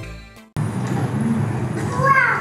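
Electronic background music fades out and stops about half a second in. A sudden cut then brings in a steady low hum of a busy indoor hall, with a short high falling voice near the end.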